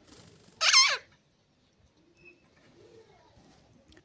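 A green ring-necked parakeet gives one loud, shrill call about half a second in, lasting under half a second and dropping in pitch at its end.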